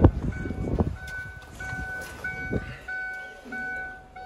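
A Chevrolet car's dashboard warning chime beeping steadily, about twice a second, with the driver's door standing open. A few knocks from handling come at the start.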